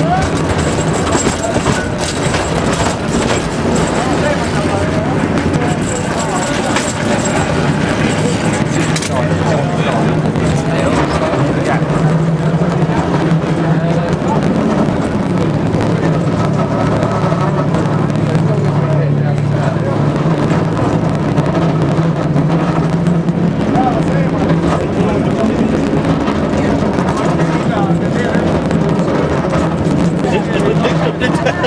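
San Francisco cable car running along its track: a loud, steady rumble with a low hum and many small clicks and rattles, with passengers' voices in the background.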